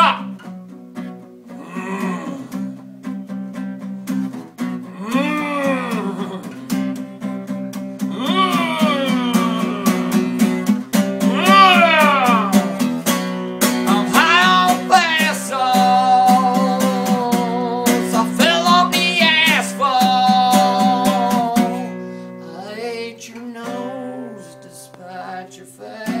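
Acoustic guitar strumming steadily while a man's voice sings in long rising-and-falling wails, then holds drawn-out notes, with no clear words. The voice fades out near the end, leaving the guitar.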